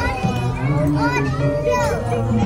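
Several young children talking and calling out at once, their high voices rising and falling in pitch.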